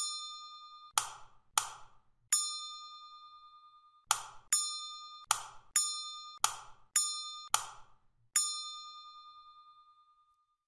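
Key-press sound effects: about a dozen sharp clicks. About every other one rings out in a bright ding that fades over a second or two. Plain clicks and ringing clicks alternate in a steady stepping rhythm.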